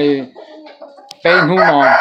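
A rooster crowing loudly: one long, pitched call that begins a little over a second in and carries on past the end.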